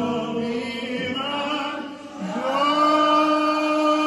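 Voices singing together, holding long sustained notes; the singing dips briefly about two seconds in and then takes up a new long held note.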